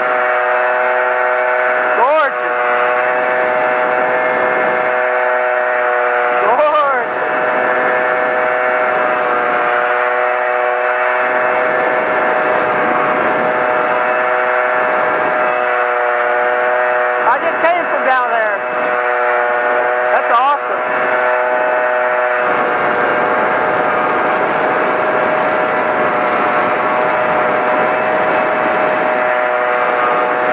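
Honda PA50II Hobbit moped's small two-stroke engine running steadily at road speed, its pitch rising and falling briefly a few times. From about two-thirds of the way through, the engine note weakens under a steady noisy rush.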